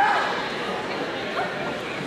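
Voices shouting from the sidelines of a wrestling bout, with one sharp falling call at the start and then fainter calls and chatter echoing in a gymnasium.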